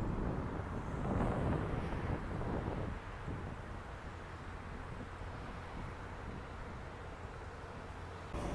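Outdoor ambient rumble of road traffic below an elevated rail platform, with wind on the phone's microphone; it drops a little after about three seconds.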